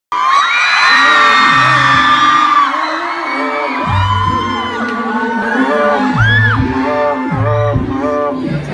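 Crowd of fans screaming and cheering at a live pop show. About four seconds in the band's song kicks in with a heavy bass beat, and the screaming carries on over the music.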